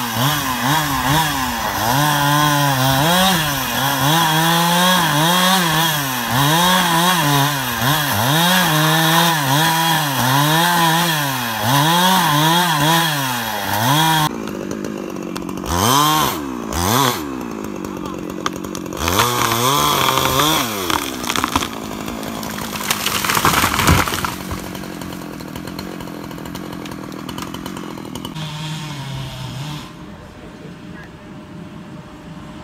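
Gas chainsaw cutting into a tree trunk, its engine note rising and falling over and over as it bites under load. About halfway through it drops to a lower level with a few quick revs, then runs more steadily, with a short loud rush of noise about six seconds before the end.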